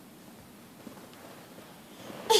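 Quiet room noise with faint rustling and one soft tap a little under a second in.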